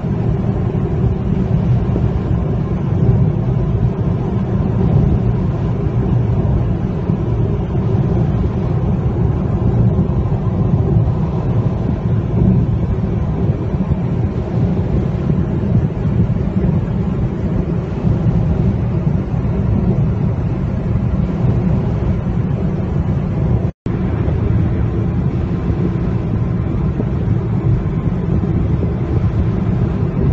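Steady low rumble of road and engine noise inside a moving car's cabin. The sound cuts out for an instant about three-quarters of the way through.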